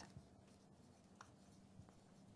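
Very faint sound of a marker pen writing on a paper chart, with a couple of light pen ticks.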